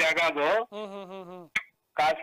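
A man's speech that stops about two-thirds of a second in. A quieter, drawn-out voiced sound with a wavering pitch follows, then a single sharp click and a brief gap.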